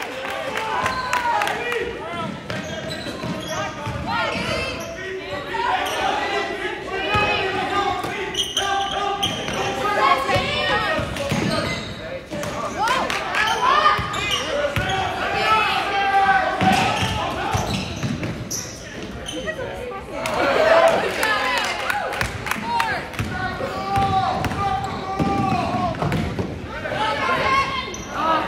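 A basketball bouncing and dribbling on a hardwood gym floor during live play, echoing in a large gymnasium, with players' and onlookers' shouts mixed in.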